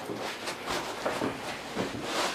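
Paper couch-roll sheet on a treatment table rustling and crinkling as a person rolls over on it, with soft rubbing of body and clothing against the couch.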